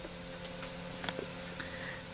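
Quiet room tone: a faint steady hum, with a light click about a second in.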